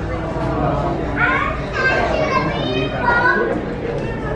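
Restaurant dining-room chatter: indistinct voices of other diners, some high-pitched, over a steady hum of the room.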